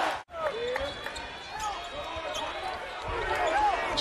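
Basketball game sound on a hardwood court: a ball bouncing and players moving, under a steady arena crowd noise that swells about three seconds in. A brief drop-out near the start marks an edit.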